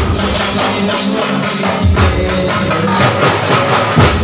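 Loud band music with drums keeping a steady beat.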